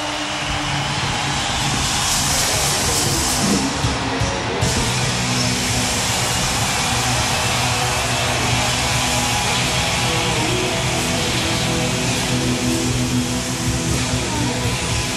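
Live hard rock band playing at full volume: distorted electric guitar over drums and bass. A bright hissing wash rides over it from about two seconds in and cuts off abruptly just before five seconds.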